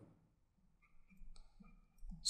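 Near silence with a few faint clicks in the second half.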